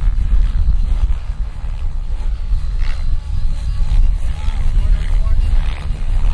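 Electric RC helicopter flying low near the ground, its rotor noise mixed under a heavy low rumble of wind on the microphone.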